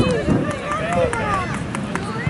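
Indistinct shouting and calling voices of spectators and players across an open soccer field, several voices overlapping.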